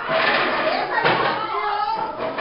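Several young people's voices talking over one another in a classroom, with a sharp knock about a second in.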